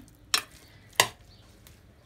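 Metal spoon knocking twice against the side of a stainless steel pot while salad is mixed in it. The second knock is louder, and the two come about two-thirds of a second apart.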